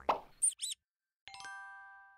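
Cartoon logo sound effects: a short plop, two quick high-pitched squeaks, then a bright chime chord of several tones that rings and fades away.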